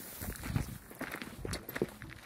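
Footsteps on a gravel path at a walking pace, about two steps a second.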